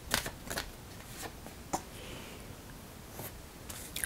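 Goddess Oracle deck cards being handled and dealt: a few sharp flicks and taps as a card is drawn off the deck and laid in the spread, four in the first two seconds and a couple more near the end.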